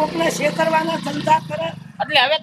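A man talking loudly, with a motorcycle engine running steadily underneath that stops shortly before the end.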